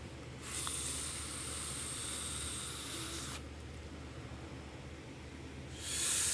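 A draw of about three seconds on a Kayfun rebuildable tank atomizer fired by an Eleaf iStick TC200W in temperature-control mode at 430°F: a steady hiss of air drawn through the atomizer over the firing coil. A shorter, louder hiss of exhaled vapour follows near the end.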